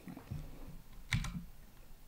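A single sharp click from the lecturer's computer about a second in, as a key or button is pressed to advance the slide, over quiet room tone.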